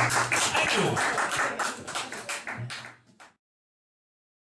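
The last moments of a live acoustic band number: bass and guitars playing, with the bass sliding down, over a run of sharp percussive taps that thin out. The sound then cuts off suddenly a little over three seconds in.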